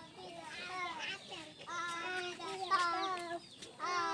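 Young children's high-pitched voices calling out and chanting in short phrases, loudest in the second half.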